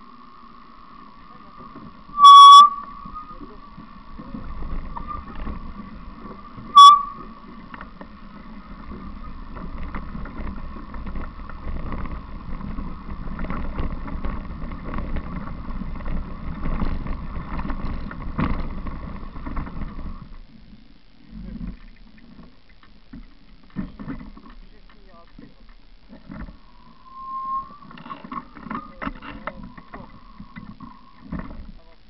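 Bicycle rolling over a dirt forest trail: rumble and rattle of the bike on the ground, with a steady high whine through the first two-thirds of the ride and two sharp, very loud knocks about two and seven seconds in. The rolling noise drops away after that into a few scattered knocks.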